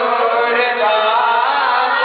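A man's voice chanting a devotional recitation into a microphone, in long held melodic lines that bend slowly in pitch without a break.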